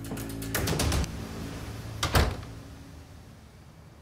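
A door shut firmly about two seconds in, the loudest sound, with a few sharp clicks shortly before it, over soft background music.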